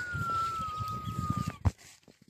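A single long whistled note that jumps up at the start, slides slowly downward in pitch and cuts off sharply, followed by a short click. Rustling in grass runs underneath.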